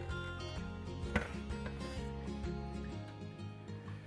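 Faint music under handling noise as a solid-body electric guitar is turned over on a padded bench: wooden knocks and rubs, with one sharper knock about a second in.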